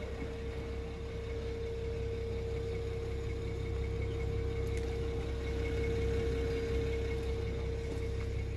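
BMW 325i's 3-litre straight-six petrol engine idling steadily, heard at the exhaust, with a steady whine over the low exhaust note. The sound grows a little louder toward the end.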